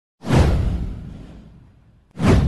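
A whoosh sound effect with a deep rumbling low end: it comes in suddenly a moment in, peaks almost at once, then fades away over about a second and a half.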